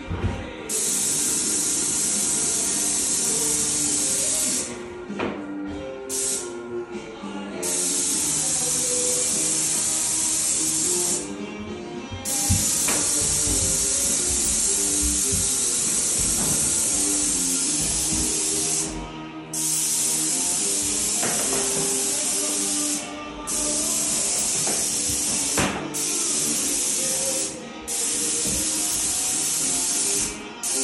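Airless paint sprayer hissing in runs of a few seconds, starting and stopping about eight times as the gun trigger is pulled and released, over background music.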